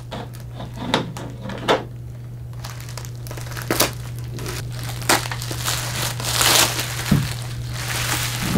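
Bubble wrap being cut open with a small knife and pulled apart: plastic crinkling with scattered sharp crackles, busiest about six and a half seconds in.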